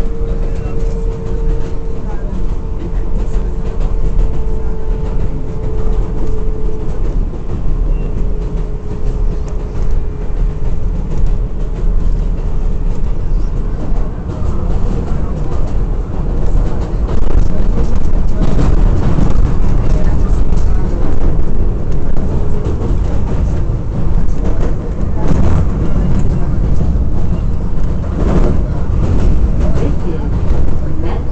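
R188 subway train running, heard from inside the car: a steady rumble of wheels on rail, with a steady tone that fades out after several seconds. It grows louder about halfway through, with clattering.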